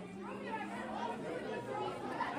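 Background chatter of many voices in a crowded school cafeteria, with no single nearby voice standing out.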